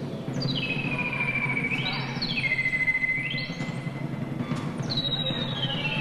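Live electronic music: a high synthesizer tone repeatedly glides down in pitch, holds, then swoops back up and falls again, about three times, over a low rumbling drone.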